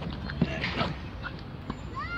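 A tennis ball struck by a racket: a sharp pock about half a second in, the loudest sound, followed at once by a short cry, then a couple of softer knocks.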